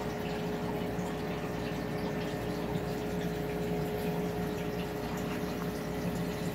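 Aquarium filter or pump running steadily: a constant low hum under the wash of moving water.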